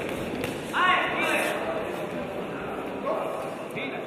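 Crowd noise in a large hall during a kickboxing bout: constant murmur and chatter, with a loud rising shout of encouragement about a second in and another shorter one near three seconds.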